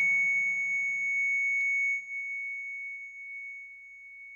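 Hospital heart monitor's flatline tone: one unbroken high-pitched beep, the sign that the patient's heart has stopped. It drops in level about two seconds in and then slowly fades away.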